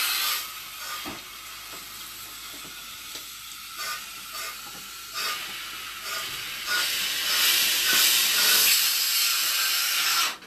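Compressed air hissing through a Quik-Shot air inversion unit as a cured-in-place pipe liner is shot into the drain. The hiss is loud at first, drops to a lower hiss with a few small knocks, and swells loud again from about seven seconds in.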